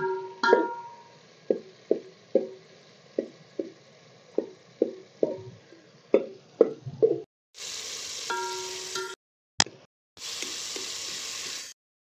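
A metal spoon knocks and scrapes against a steel cooking pot while stirring frying tomatoes, about a dozen irregular strikes, each leaving the pot ringing. In the second half, two spells of steady hiss start and stop abruptly.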